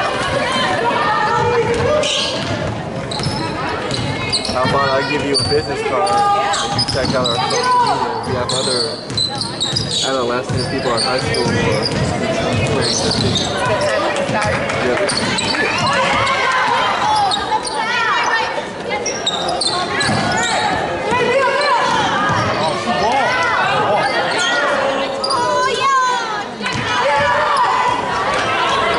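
Live basketball game sound in a gymnasium: a basketball dribbling on the hardwood court amid the calls and chatter of players and spectators, echoing in the large hall.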